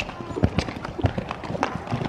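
Hoofbeats of a horse cantering on soft arena sand: dull thuds in an uneven rhythm as it comes up to a small jump.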